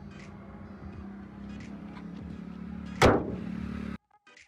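A car bonnet slammed shut about three seconds in: one loud metallic bang with a short ringing fade, over a faint steady hum.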